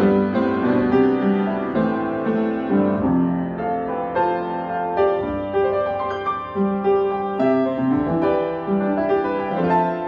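Yamaha B1 upright acoustic piano being played: a flowing passage of chords and melody with the sustain pedal down, so the notes ring on into one another.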